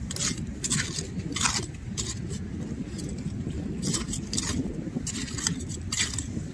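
A short metal hand hoe scraping and chopping through shelly tidal mud while digging Manila clams, clinking against shells in a series of irregular strokes, over a steady low rumble.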